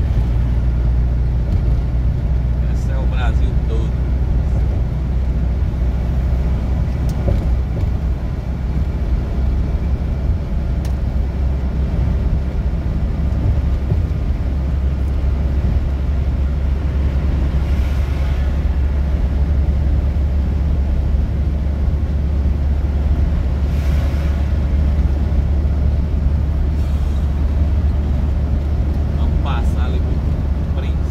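Truck engine and tyre noise heard inside the cab while cruising on a highway: a steady, low drone.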